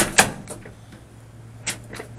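Two sharp knocks close together, from the 1969 Ford Econoline's door-linked mechanical step and its linkage as the side door is worked.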